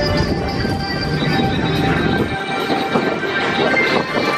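Tomorrowland Transit Authority PeopleMover car running along its elevated track, a low rumble that drops away about two and a half seconds in, under steady background music from the ride's onboard speakers.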